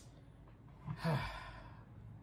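A person sighing about a second in: a short breathy exhale with a little voice in it, over quiet room tone.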